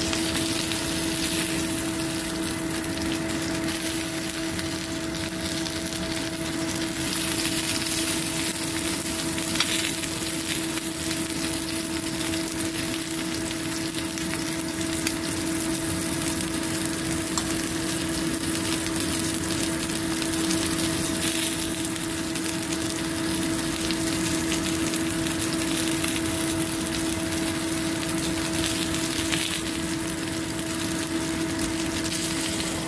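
Beef and bell-pepper kebabs sizzling steadily on a hot, oiled ridged grill plate, a continuous crackling fry. A steady low hum runs underneath.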